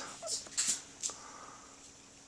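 A toddler drinking from a plastic sippy cup: a few faint, short sips and swallows in the first second, with a faint thin small sound from her a little after.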